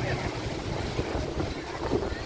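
Wind buffeting the microphone, an uneven low rumble over a steady hiss, with faint chatter of people in the background.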